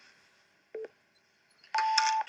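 Countdown timer beeps: a short beep about three-quarters of a second in, then a longer, higher-pitched beep near the end that marks the start of the two-minute clock.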